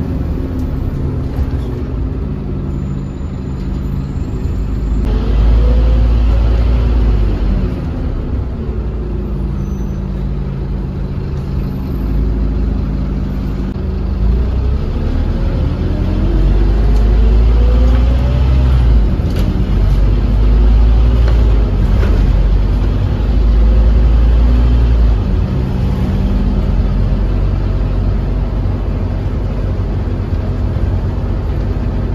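Bus engine heard from inside the passenger saloon, with a heavy low rumble. It runs steadily, then pulls away with its pitch rising about five seconds in and again from about fourteen seconds in as the bus accelerates.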